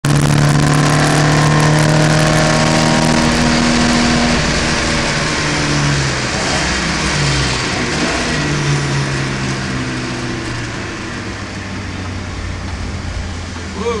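Race car engine heard from inside a stripped-out cabin, running hard at steady revs for the first few seconds, then the engine note shifts lower and gets quieter from about six seconds in. A steady hiss of wet tyres and spray runs underneath.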